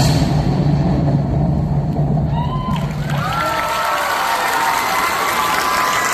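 Audience cheering and screaming as the dance music ends, with high-pitched shrieks and whoops from about two seconds in.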